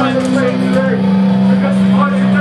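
A steady, loud low drone from a band's amplifiers on stage, growing stronger about a second in, with voices over it.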